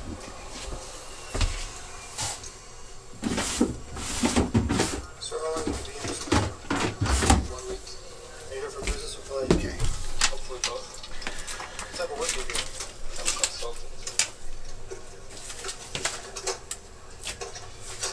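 Indistinct voices murmuring, mixed with the rustling and clatter of paper and plastic transfer sheets being handled and peeled on a counter.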